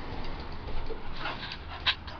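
A pet dog making a few short sounds, the loudest near the end.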